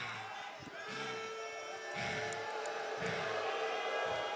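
Music playing over the arena, with a steady beat about once a second and held tones, under crowd noise.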